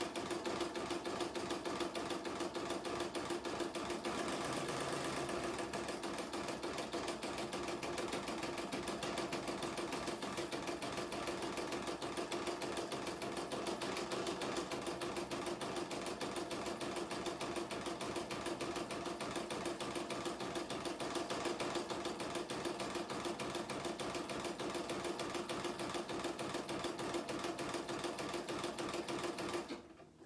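Computerized embroidery machine stitching an in-the-hoop design at a fast, steady stitch rhythm. It stops suddenly at the end.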